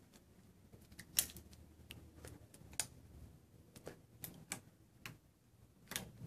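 Scattered light clicks and taps, about half a dozen, as a rubber balloon is fitted over the mouth of a glass test tube standing in a wooden rack. The loudest click comes about a second in.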